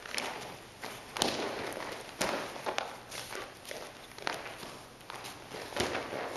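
Bare feet shuffling and cotton gi rustling on a padded mat during aikido throws, broken by several sharp thuds of a partner being thrown and taking breakfalls, the heaviest just before the end.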